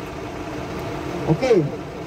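A fire engine's diesel engine idling steadily, a low, even hum. A man says "okay" about halfway through.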